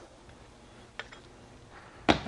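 A quiet stretch with one faint, short metal click about halfway through as the fold-down steel cargo rack on the trailer's rear bumper is handled.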